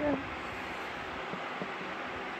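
Steady background hiss after a word spoken at the start, with a couple of faint soft ticks about midway.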